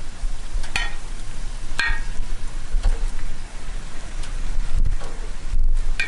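Steady sizzling hiss of a whole fish cooking on a hot gas grill, over a low rumble. Two short clinks of a spoon against a ceramic bowl, about one and two seconds in.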